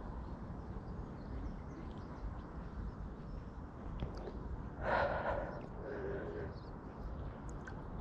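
A swimmer breathing while swimming, with a loud sharp breath about five seconds in and a softer one a second later. Water moves around the swimmer throughout.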